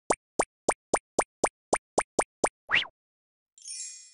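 A quick run of about ten short cartoon 'plop' sound effects, roughly four a second, ending in one longer swooping pop. A bright chime starts just before the end.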